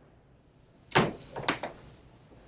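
Makeup products being handled on a tabletop: one sharp knock about a second in, then two lighter clacks close together, like a compact or jar being set down and its lid opened.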